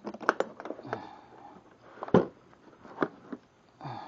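Sharp plastic clicks and knocks as a hard-shell plastic tool case is unlatched and opened and the cordless hammer drill is lifted out. The loudest knock comes about two seconds in.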